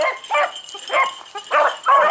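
A pack of beagles baying on a rabbit's scent trail: a run of short, overlapping howling yelps, about five in two seconds, the sound of hounds actively running the track.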